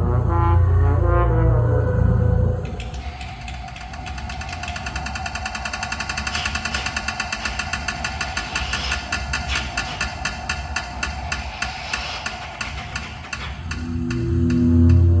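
Contemporary music for horn and live electronics: low, sustained horn tones, computer-processed, break off abruptly about two and a half seconds in, giving way to an electronic texture of rapid, evenly spaced pulses over a steady tone.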